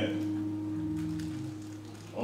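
A held musical chord of a few steady tones, sustaining and then slowly fading.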